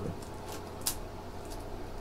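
Low steady room hum with one short, faint click a little under a second in.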